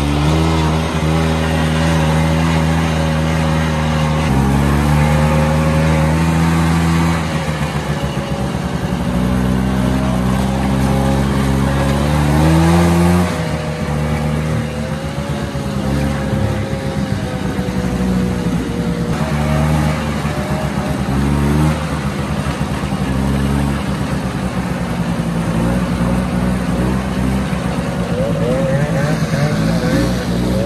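Snowmobile engine running under way, its pitch climbing as it accelerates and dropping back several times.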